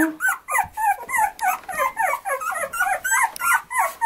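Young boxer puppy whining: a fast, unbroken run of short high cries, each rising and falling, about three or four a second.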